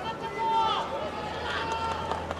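Arena crowd noise with distant spectator voices, one drawn-out shout about half a second in, over a steady low hum.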